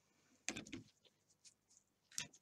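Near silence, with a brief faint rustle of hands handling a wool pom-pom tail about half a second in and a tiny tick later.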